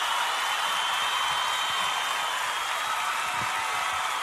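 A steady hiss, even in level throughout, with no music or speech.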